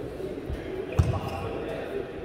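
Badminton rally: players' shoes thud on the court floor, and a racket strikes the shuttlecock with a sharp crack about a second in, the loudest sound. Voices carry on underneath.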